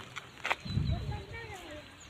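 Indistinct voices in the background, with a single sharp click about half a second in.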